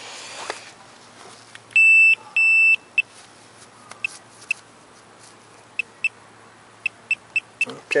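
Minelab Pro-Find pinpointer beeping over a buried target: two long high beeps about two seconds in, then short beeps at the same pitch coming faster near the end as the probe closes in on the target.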